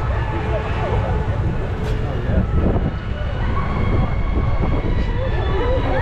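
Steady low rumble of a shoot-the-chutes ride boat gliding along its water channel, with riders talking and laughing over it.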